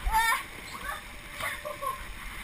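A child's high-pitched shout right at the start, then fainter children's voices calling out. Under the voices are the thump and scuffing rustle of bouncing on an inflatable bouncy castle's vinyl floor and walls.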